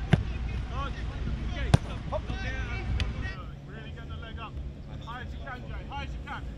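Football being kicked: three sharp thuds of the ball struck in the first three seconds, the loudest about two seconds in, over distant shouting voices and wind rumble on the microphone.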